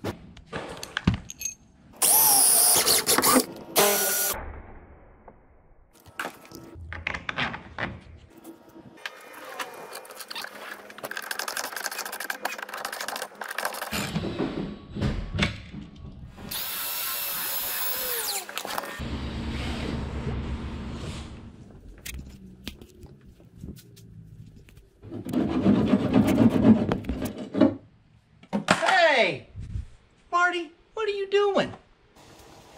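Electric drill running in several short bursts, the longest a steady run of about two seconds, drilling holes in a plastic bracket, with clicks and clatter of hardware between runs.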